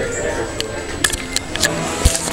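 Indistinct chatter of a crowd of people, with a few sharp knocks from a handheld camera being carried along.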